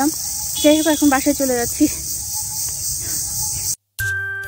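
Steady, high-pitched insect chorus, with a woman's voice speaking briefly over it from about half a second to two seconds in; everything cuts off suddenly just before the end.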